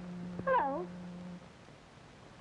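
A kitten meowing once, a short call that wavers and falls in pitch, about half a second in.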